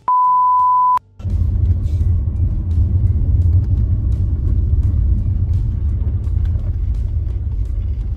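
A steady high test-tone beep, like a colour-bar signal, lasts about a second and cuts off suddenly. A moment later comes the loud, steady low rumble of a V6 car being driven, heard from inside the cabin.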